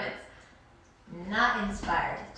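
Speech: a woman talking, broken by a pause of under a second.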